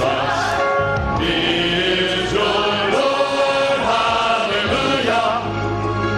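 Male vocal group singing a gospel song in close harmony, several voices holding sustained chords that shift together.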